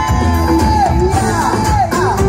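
Loud live band music with a steady bass beat, and two notes sliding down in pitch, one near the middle and one near the end.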